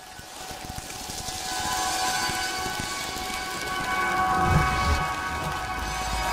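A produced sound bed: a rain-like hiss swells in from silence under several held tones, with a low rumble joining about four and a half seconds in.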